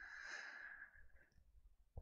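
Near silence: a faint exhaled breath close to the microphone in the first second, fading out, then quiet room tone.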